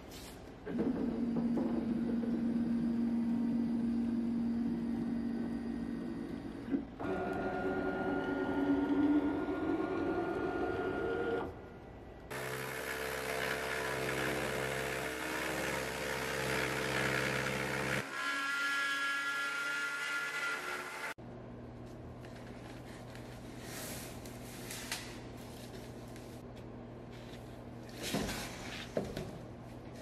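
Wood-router spindle on a homemade gantry CNC router cutting a template out of OSB sheet: a steady high-speed whine with cutting noise. It changes abruptly several times between short clips and is quieter over the last third.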